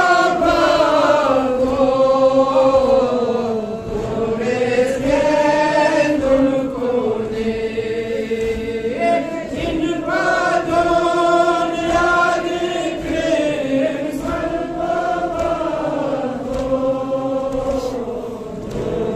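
A man chanting a Balti noha, a Shia mourning lament, into a microphone, holding long notes that slide slowly up and down, with short breaks between phrases.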